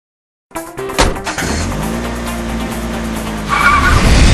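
Car sound effects with music in a TV commercial's opening, starting after half a second of silence: a sharp hit about a second in, then a car running, with a tire squeal near the end.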